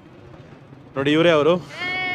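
Low street background, then about a second in a man's voice calls out with a wavering pitch, followed near the end by a woman's long, high, steady greeting call.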